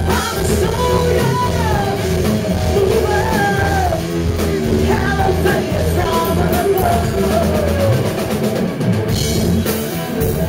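Live rock band: a female lead singer sings over electric guitar, bass and drums, recorded close to the loudspeakers so the sound is overloaded and distorted. A brighter crash of cymbals comes near the end.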